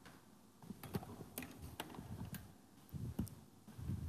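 Scattered light clicks and a few soft low thumps from an actor moving about a stage and handling a canister vacuum cleaner, which is not running.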